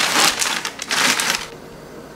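Plastic zip-top freezer bag crinkling and kale leaves rustling as the greens are stuffed into the bag, in two bursts in the first second and a half.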